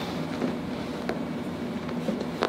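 Steady low room hum, with a faint small click about a second in.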